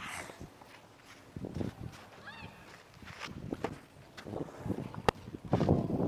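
Tennis serve practice on a clay court: a sharp single crack of a tennis ball about five seconds in, with soft scuffing between. A short chirp comes about two seconds in.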